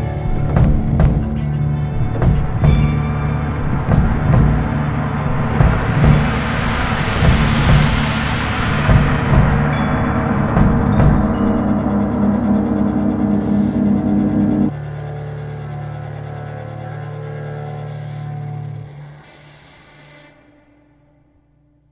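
A band's song ending: drum beats under guitars and keyboards while a large gong is rolled with mallets into a swelling wash that peaks about halfway through and dies back. About three quarters in the band cuts off suddenly, leaving one held chord that fades out near the end.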